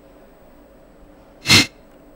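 A single short, sharp burst of noise about one and a half seconds in, lasting about a fifth of a second, over a faint steady hum.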